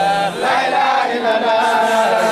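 A group of men chanting a Mouride Sufi devotional chant in chorus, with long held notes that glide between pitches.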